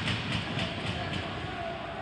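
Ice hockey play on a rink: a run of short scrapes and clacks from skates and sticks on the ice, about three a second, over the low rumble of the arena.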